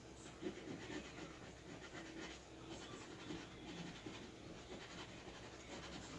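Scratch-off lottery ticket being scratched by hand: a run of quick, faint scraping strokes across the card's coating.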